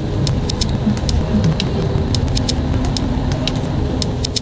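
Steady low road rumble inside a bus moving along a wet motorway, with scattered light ticks of raindrops hitting the window.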